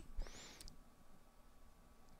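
Felt-tip marker on paper: one short, high squeak that rises and falls in the first half second, with a light tap of the tip at its start.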